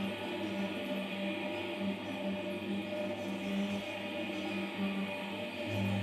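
Sound installation playing a steady, layered drone of held tones, music-like with a faint choir-like quality.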